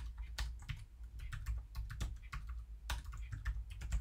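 Typing on a computer keyboard: a quick, irregular run of key clicks as an email address is entered.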